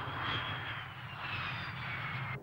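Jet airliner passing low with its landing gear down. Its engines give a steady rushing roar, with a whine that falls steadily in pitch as it goes by.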